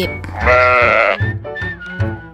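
A single sheep bleat sound effect, one wavering 'baa' just under a second long, over light children's background music.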